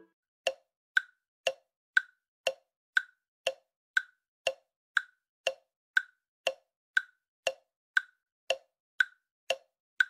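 Countdown-timer clock tick-tock sound effect: short ticks two a second, alternating a higher and a lower tick.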